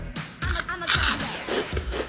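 Background pop music with a steady beat, and a loud crunch about a second in as a Flamin' Hot Cheeto is bitten.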